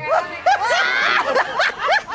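A group of people laughing at once, several high-pitched laughs overlapping.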